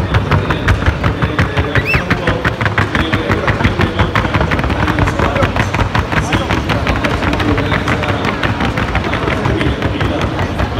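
Rapid, even patter of hoofbeats from a Paso Fino filly in the trocha gait, her hooves striking a hard sounding board with many sharp strikes a second.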